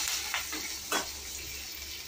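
Sliced onions, dried red chillies and curry leaves sizzling in hot oil in a stainless steel kadai, stirred with a slotted spatula that scrapes the pan a couple of times.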